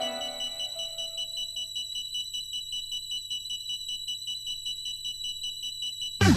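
Breakdown of a hard trance track: a synthesizer melody fades out over the first two seconds, leaving sustained high synth tones over a soft, regular pulse.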